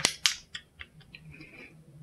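Crumpled plastic snack wrapper crackling as it is handled and opened out: two sharp crackles right at the start, then fainter scattered crinkles.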